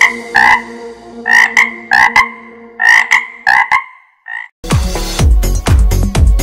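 Frog croaking: a run of about ten short croaks, several in quick pairs. Electronic dance music with a steady beat starts suddenly a little over halfway through.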